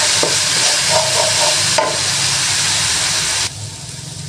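Blended chili-shallot-garlic spice paste frying in oil in a nonstick wok: a steady sizzle while a wooden spatula stirs and scrapes it round, the paste being sautéed until fragrant. The sizzle drops off abruptly about three and a half seconds in.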